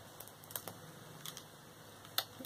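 A few faint, light clicks and handling noises from a small doll being handled in the hands.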